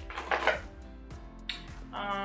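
A glossy plastic toiletry pouch being handled, with a brief crinkling rustle in the first half-second and a sharp click about a second and a half in, over background music.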